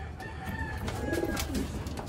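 Racing pigeons cooing in a wire-mesh loft cage, a low wavering coo strongest around the middle, with a few light clicks of a hand working at the cage.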